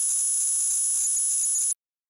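Screechy, high-pitched digital data signal like a modem's: a TonePrint setting encoded as audio for transfer from phone to pedal. It holds steady, then cuts off suddenly near the end.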